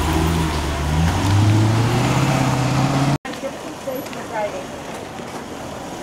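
A large SUV's engine accelerating close by as it pulls away, its pitch rising steadily. The sound cuts off suddenly about three seconds in, leaving quieter crowd noise with faint voices.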